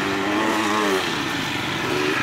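Enduro motorcycle engine running as the bike rides in, its note dropping about halfway through as it slows.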